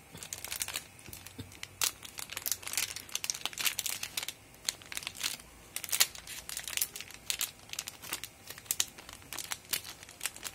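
Clear plastic packet crinkling and rustling as it is handled and a wristband strap is taken out of it, an irregular run of sharp crackles with one of the loudest about six seconds in.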